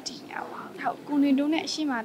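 A woman's voice speaking, continuous narration.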